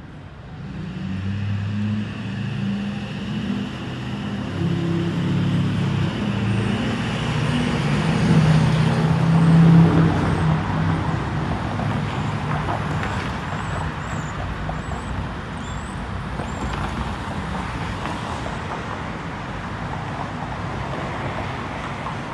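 Street traffic: a motor vehicle's engine running close by, growing louder to a peak about ten seconds in, then fading into steady road noise.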